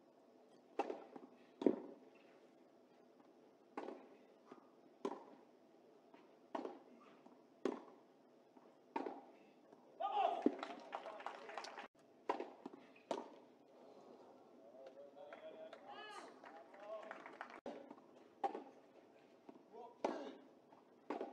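Tennis rally: the ball struck back and forth by racquets, a string of sharp pops about one to one and a half seconds apart. After the hits stop there are voices, then more hits near the end.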